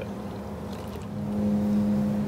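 Steady machine hum with a low tone, growing louder about a second in: a paint booth's ventilation fan running.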